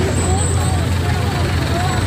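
Steady low rumble of city road traffic, with several people talking over it.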